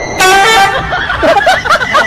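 A loud, high-pitched shriek, then a run of shorter cries that rise and fall in pitch, cut off suddenly. The cries come as a fish leaps out of a kitchen sink in front of two cats.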